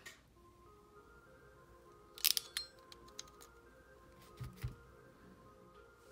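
Soft background music with a few held notes, faint under the room sound. A quick cluster of sharp clicks comes a little after two seconds in, and two low knocks come about four and a half seconds in.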